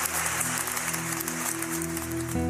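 Applause dying away over steady notes from an acoustic guitar as a song begins.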